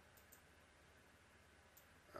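Near silence with a few faint, short clicks, typical of a computer mouse being clicked.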